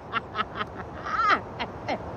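A woman laughing in rapid short bursts, then letting out a wavering squeal about a second in and a few more laughs.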